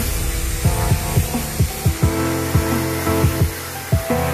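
Electronic background music with a beat of deep kick drums under sustained notes.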